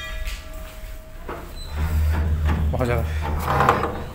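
Indistinct voices over a low rumble, with a brief tone right at the start.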